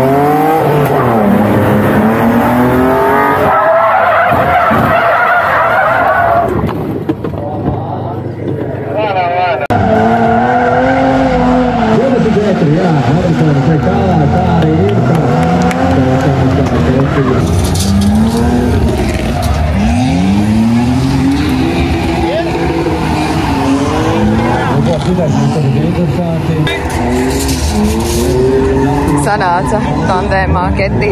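BMW E36 drift car's engine revving hard and falling back again and again, with tyres squealing as it drifts. The sound changes abruptly about a third of the way in, from inside the car to trackside.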